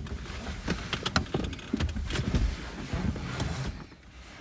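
Rustling and irregular soft knocks and clicks of a person moving about inside a car, clothing brushing and bumping against the seats and centre console.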